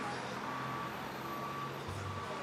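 A vehicle's reversing alarm beeping faintly and evenly, about once every three-quarters of a second, over a low engine hum.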